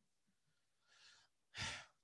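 Near silence, with a faint breath about a second in, then a man's short, louder breath into a close microphone near the end.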